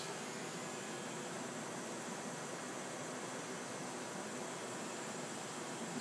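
Steady, even background hiss with no distinct machine sound or separate events.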